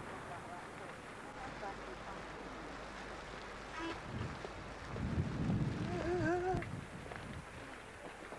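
Outdoor ambience of faint voices and wind on a camcorder microphone. A louder gust of wind buffets the mic about five seconds in, and a voice calls out briefly just after.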